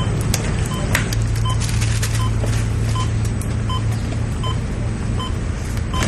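A short electronic beep repeating evenly, a little faster than once a second, typical of a patient monitor, over a steady low machine hum. Scattered light clicks and rustles come from medical equipment being handled.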